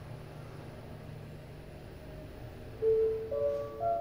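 OTIS passenger elevator car travelling with a steady low hum, then its arrival chime near the end: three tones stepping up in pitch, signalling that the car has reached the floor.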